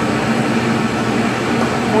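Steady hum and hiss of kitchen background noise, like a ventilation or extractor fan, with no clear events.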